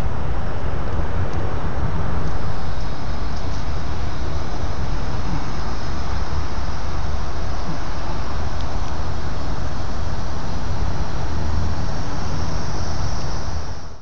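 Steady outdoor ambient rumble, heaviest in the low end and even throughout, that cuts off abruptly near the end.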